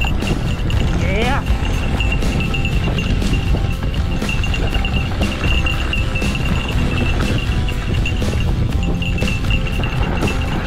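Mountain bike riding down a forest singletrack: continuous rumble of tyres and wind on the camera, with frequent rattles over the rough trail and a steady high-pitched whine.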